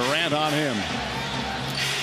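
Broadcast sound from an NBA arena: a basketball being dribbled on a hardwood court over a steady crowd murmur, with a commentator's voice briefly at the start.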